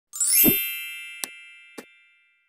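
Logo intro sound effect: a sudden rising shimmer with a low thud, then bright bell-like chime tones that ring on and slowly fade. Two short clicks come through the fading chime, about a second in and near the end, in the manner of a subscribe button and notification bell being clicked.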